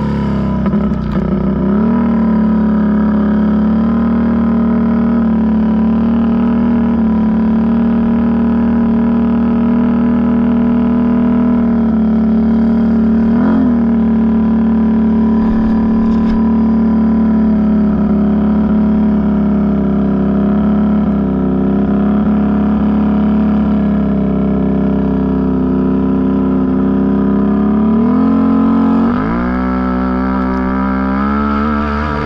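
Can-Am Renegade ATV's V-twin engine running at a steady speed after easing off at the start, with a short blip of revs about halfway and a dip then rev up near the end.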